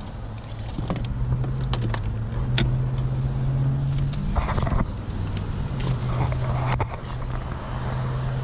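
A car engine idling with a steady low hum. Over it come scattered clicks, knocks and shuffling as a person moves about and climbs out of the car.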